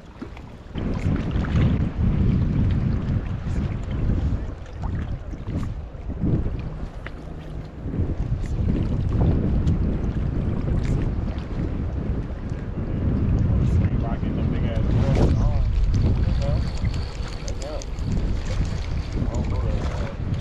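Wind buffeting the microphone: a heavy, uneven low rumble that rises and falls with the gusts. A faint voice is heard briefly about three-quarters of the way through.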